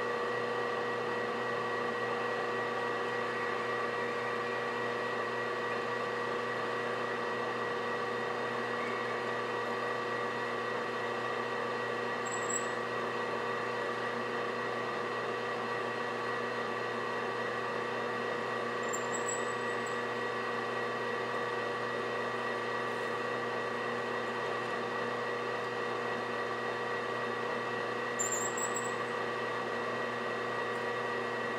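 Small metal lathe running steadily with a constant motor whine while a twist drill in the tailstock chuck bores into a part turning in the lathe chuck. Three brief, faint high chirps come a little before halfway, about two-thirds through and near the end.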